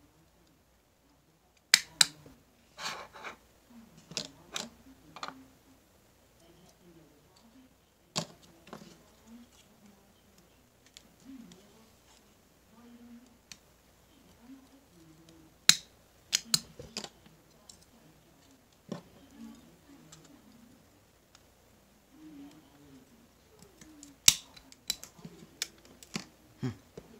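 Metal staple remover prying staples out of cardboard coin holders: sharp clicks and snaps in small clusters, with quieter handling and rustling in between.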